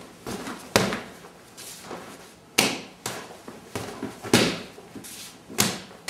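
Hand strikes (slaps, back fists and hammer fists) on a freestanding punching bag and its movable striking arm: about six sharp, irregularly spaced smacks and knocks, with lighter knocks between.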